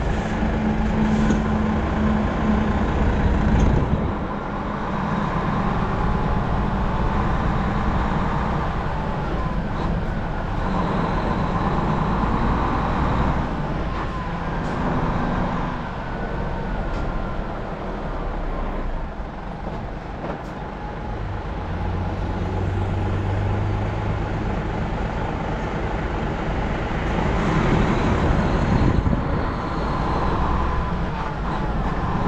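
Hino tractor-trailer's diesel engine running as the rig drives off slowly, with road noise. The engine note rises and falls.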